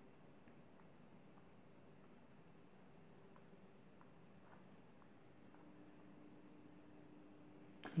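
Near silence with a faint steady high-pitched tone throughout. A few faint scratches come from a marker pen writing and drawing on a paper sheet.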